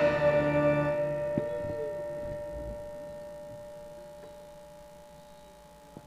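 Gamelan instruments ringing on after the ensemble stops playing, several held tones dying away slowly over about five seconds until almost nothing is left.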